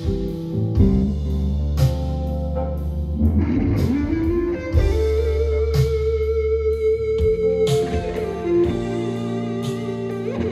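Live rock band playing, led by an electric guitar with drums from an electronic drum kit. The guitar bends a note upward about four seconds in and holds it, while drum hits come mostly in the first couple of seconds. It is heard through a Neumann KU-100 dummy-head microphone.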